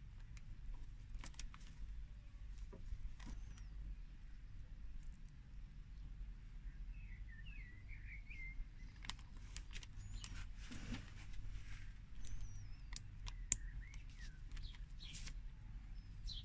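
Faint, scattered clicks of small plastic Lego bricks being handled and pressed together, over a steady low background hum. A few faint bird chirps come through in the second half.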